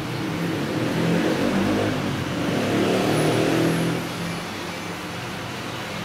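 A motor vehicle's engine, louder with a wavering pitch for the first four seconds and then settling to a quieter steady hum.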